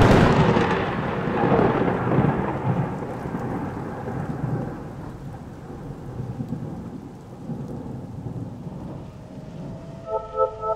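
A thunder-like sound effect: a sudden loud crash that rumbles and slowly fades over several seconds, with a steady rain-like hiss beneath it.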